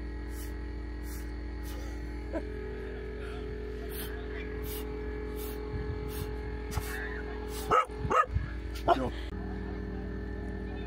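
A dog barks three short times about eight seconds in, over a steady hum.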